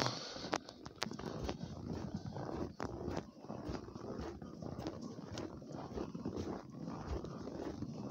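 Footsteps crunching through fresh snow, with irregular crunches and small knocks.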